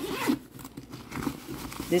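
Metal zipper on a fabric backpack-style diaper bag being pulled, with a short rasp near the start, followed by quieter fabric handling.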